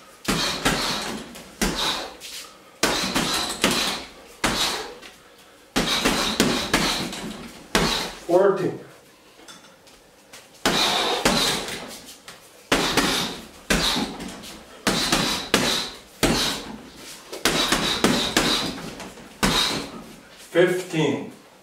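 Boxing-gloved punches landing on a hanging heavy bag in quick combinations of two to five sharp slaps. There is a short pause near the middle, with a brief vocal sound about eight seconds in.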